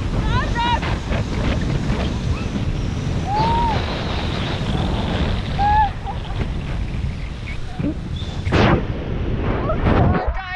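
Wind from the airflow of paragliding flight buffeting the camera microphone: a steady rumble, with a few brief vocal sounds and a short louder gust about eight and a half seconds in.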